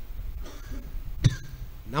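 A man's single short cough into a close microphone, about a second into a pause in his speech.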